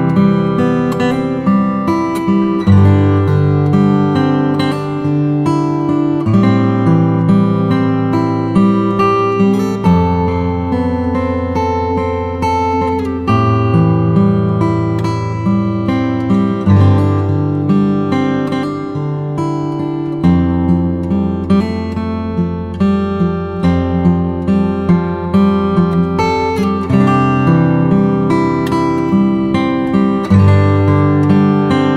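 Background music: an acoustic guitar playing chords with many plucked notes, the bass note changing every few seconds.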